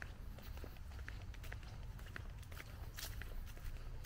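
Footsteps of a person walking on a concrete sidewalk, a few light steps a second, over a steady low rumble.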